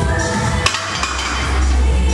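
Background electronic music with a steady bass beat, broken about two-thirds of a second in by a single sharp metallic clink.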